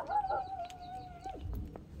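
A dog howling: one long, level note that drops away after about a second and a half, followed by a low rumble.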